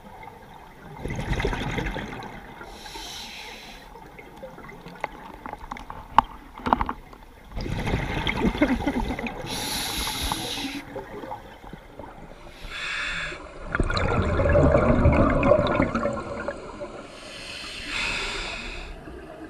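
A scuba diver breathing through a regulator underwater: short hissing inhalations alternate with longer gurgling bursts of exhaled bubbles, several breaths in turn.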